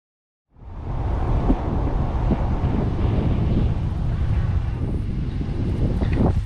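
Wind buffeting the camera's microphone outdoors: a steady low rumble that cuts in suddenly about half a second in.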